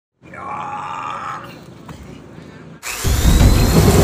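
A brief voice-like sound, then about three seconds in a loud intro sound effect starts: a rising whoosh over a deep rumble.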